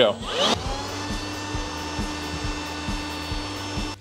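Makita cordless leaf blower spinning up with a rising whine in the first half second, then running at a steady whine, blowing into a small WaterLily hydro turbine to spin it. It cuts off shortly before the end.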